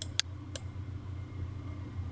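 Two sharp computer mouse clicks within the first second, over a low steady hum.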